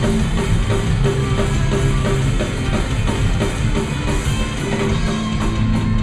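Punk rock band playing live: electric guitars and a drum kit, loud and steady throughout.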